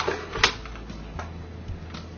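A sharp plastic click about half a second in as the battery pack snaps into the Fujikura FSM-18S fusion splicer, followed by a fainter click and a few small handling ticks.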